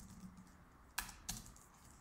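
Computer keyboard keystrokes, two faint clicks about a third of a second apart.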